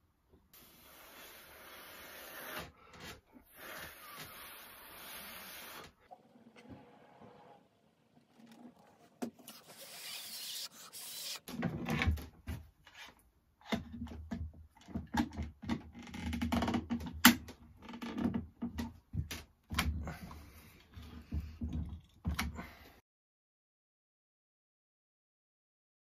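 Glue bottle being squeezed, giving a steady sputtering noise for several seconds. Then a run of sharp wooden knocks and clatter as glued boards are pressed together and handled, the loudest knock about two-thirds of the way through.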